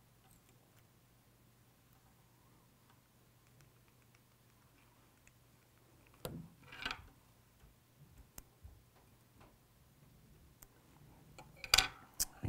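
Quiet room tone with small handling sounds of fly tying at the vise: two brief rustles a little past halfway, a few faint ticks, and a sharp click just before the end.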